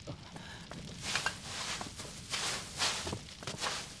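Dry straw rustling in several bursts as a pile of it is pulled aside by hand.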